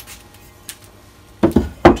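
Metal lathe tool rest being lifted out of its holder and set down on a wooden bench, two solid knocks about a second and a half in, close together.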